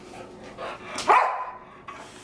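A pet dog giving a single sharp bark about a second in: a play bark at its owner.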